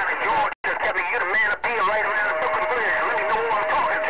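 Garbled, overlapping voices of distant stations coming through a CB radio's speaker over static hiss, too distorted to make out. A steady tone from another carrier sits under the voices from about two seconds in, and the audio drops out completely for a moment about half a second in.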